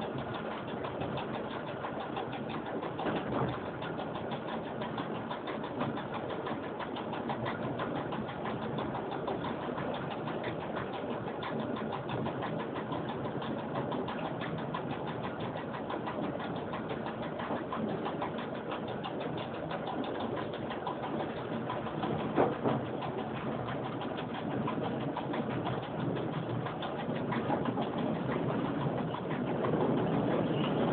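Cab noise of an EN57 electric multiple unit running along the track: a steady rumble of wheels and motors with constant fine rattling. There is a sharp knock about 22 seconds in, and the noise grows louder near the end.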